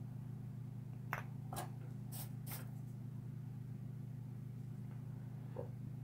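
Steady low hum with a few faint clicks of small parts being handled, between about one and two and a half seconds in.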